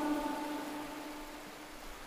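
A pause in Quran recitation: the reciter's last note dies away in reverberation, fading steadily into a faint hiss.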